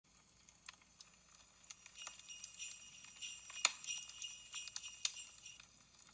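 Sleigh bells jingling faintly and unevenly, swelling after about two seconds, loudest around the middle, then fading away.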